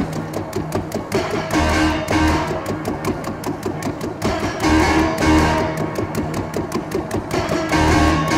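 Grand piano played with a hand reaching in on the strings, giving a muted, plucked-sounding tone. Quick, even repeated notes run over a phrase that comes round about every three seconds, each time opening with two deep bass notes.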